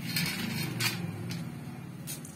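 Peanut kernels stirred in ghee in a steel kadhai on a gas stove: a few short sharp scrapes and clicks of nuts against the metal over a low steady hum.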